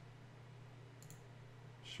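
A single faint computer-mouse click about halfway through, over a low steady hum of room tone.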